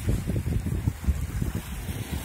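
Wind buffeting the microphone in an uneven, gusty low rumble, over the wash of small waves breaking on the shore.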